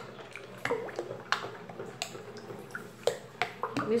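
Thin homemade liquid detergent, made from leftover soap, sloshing in a plastic basin as it is stirred with a long plastic stirrer, with irregular small splashes and clicks.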